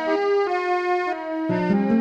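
Keyboard music playing held, piano-like chords that change a few times, with a short laugh near the end.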